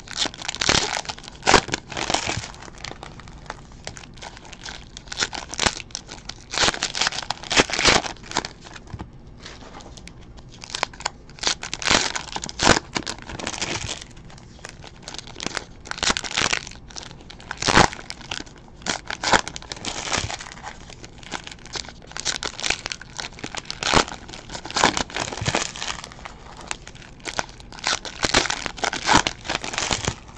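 Trading card pack wrappers crinkling and tearing as they are ripped open by hand, in irregular clusters of crackles with short pauses between.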